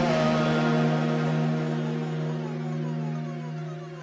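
Electronic background music: held synth chords that fade out gradually.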